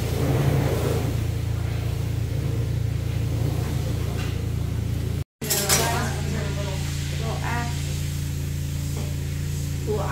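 A steady low hum under quiet, indistinct talk, with a brief dropout to silence a little past five seconds in.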